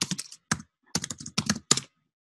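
Typing on a computer keyboard: quick runs of keystrokes in several short bursts, stopping just before the end, as a search term is entered.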